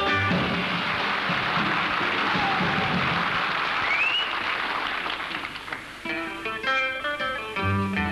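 Studio audience applauding as a skiffle number ends, with a brief rising whistle about halfway through. The applause dies away and an acoustic guitar starts playing near the end, opening the next song.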